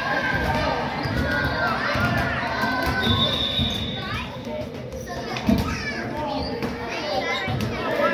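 A basketball being dribbled on a gym floor, with children's and adults' voices echoing through a large hall and a louder thump a little past halfway.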